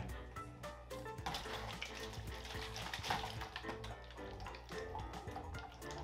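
Background music, with water from the upper two-litre bottle draining and swirling through a tornado-tube connector into the lower bottle, loudest in the first half.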